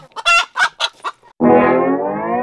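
A hen clucking in a few short calls, then about one and a half seconds in a loud trombone-like comedy sound effect starts, its pitch rising steadily.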